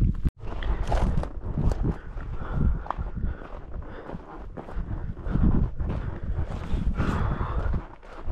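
Wind buffeting an outdoor camera microphone, uneven low rumble with scattered small knocks and rustles, broken by a brief dropout about a third of a second in.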